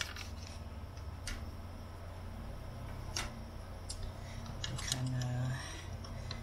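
A few short, sharp clicks and taps as the back cover of a UHER 4000 L portable reel-to-reel recorder is lifted off its case and handled, over a steady low hum.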